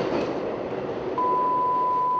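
Subway train running through a tunnel, a steady noise. About a second in, a single long steady beep starts on top of it: an answering machine's beep before a message.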